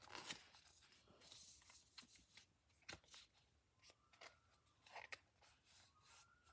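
Near silence with faint, scattered rustles and small ticks of a trading card being slid back into its plastic sleeve.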